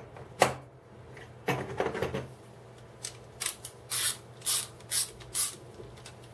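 Steel hand tools being handled in a hard plastic tool case: a sharp click near the start and a clatter about a second and a half in. Then come six short, hissy metallic bursts, about two a second, as the screwdriver handle and a fitted bar are worked in the hands.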